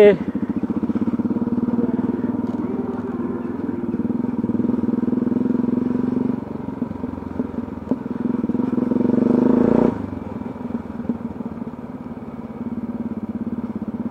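Motorcycle engine running under way in city traffic. The note builds from about eight seconds in, then drops suddenly just before ten seconds, and runs on lower.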